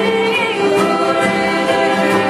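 A bluegrass gospel band playing live: a woman sings the lead, with other voices and an upright bass under her.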